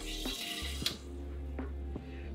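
Beer gun hissing into an aluminium can for about the first second, then cutting off with a click. Quiet background music underneath.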